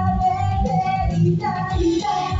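Japanese idol-pop song performed live: young female vocals singing a melody over a pop backing with a steady beat, one note held for over a second early on.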